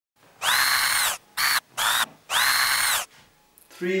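An electric whirring sound in four bursts, each rising in pitch as it starts and falling as it stops; the first and last bursts are longer than the two short middle ones.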